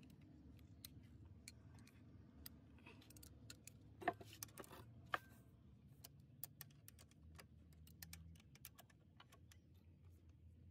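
Faint, scattered metallic clicks and clinks of hand tools on the connecting-rod cap bolts of an engine, with a louder rattling clatter about four seconds in.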